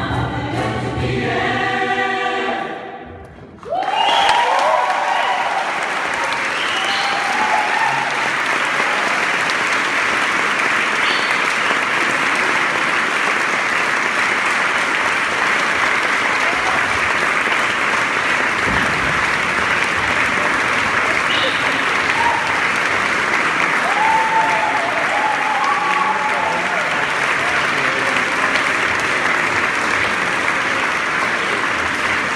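A mixed a cappella vocal ensemble holds a final chord that fades out about three seconds in. After a moment's silence the audience applauds steadily, with a few voices calling out over the clapping.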